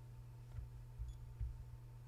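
A few soft, faint footsteps of a person walking down steps, over a steady low hum.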